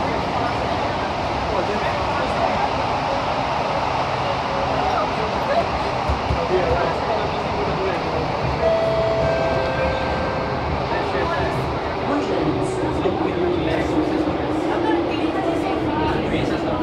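Thomson-East Coast Line CT251 metro train running, with steady rail and cabin noise. In the second half a motor whine falls in pitch as the train brakes into a station.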